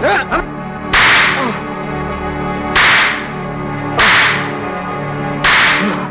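Four whip lashes, film sound effects, each a sudden sharp crack that trails off, spaced a second or two apart, over sustained background music.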